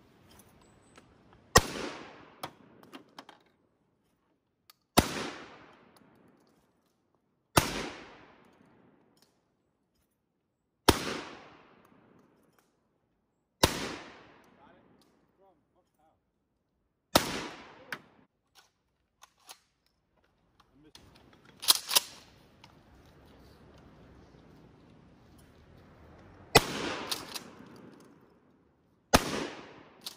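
12-gauge shotgun shots: about nine single reports spaced a few seconds apart, two of them fired in quick succession about two-thirds of the way through, each dying away over about a second.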